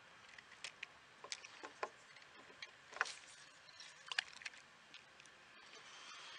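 Irregular light clicks and taps, a dozen or so scattered unevenly, the sharpest about three seconds in, over a faint steady hiss.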